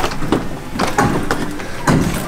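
A series of knocks and footfalls as a glass storm door is pushed open and children step out over the threshold onto the porch.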